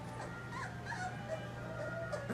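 Three-week-old Labrador puppies whimpering: a few short high squeaks about half a second in, then a longer wavering whine in the second half.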